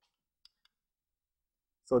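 Two faint short clicks about half a second in, a fifth of a second apart, against near silence.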